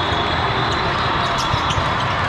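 Din of a busy multi-court volleyball hall: balls being struck and bouncing off the floor in scattered sharp knocks over a steady echoing background of voices and movement.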